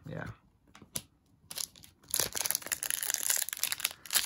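A few light clicks of trading cards being handled, then, about halfway in, a foil trading-card pack wrapper crinkling steadily.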